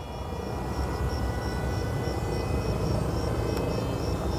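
E-Flite EC-1500 twin electric RC plane gliding in to land with its motors at no power. A low, steady rush grows louder over the first second or so as it comes nearer.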